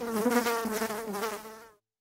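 Insect-like buzz, like a fly or mosquito, wavering slightly in pitch and stopping suddenly near the end.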